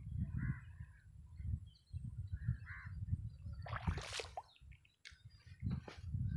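Crows cawing a few short times, one louder harsh call about four seconds in, over wind rumbling on the microphone.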